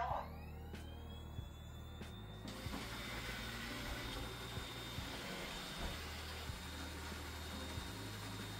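Roborock Q5 Pro robot vacuum's motors starting up as it heads back to its charging dock on a voice command. A whine rises in pitch over the first two seconds or so, then settles into a steady whir with a high whine.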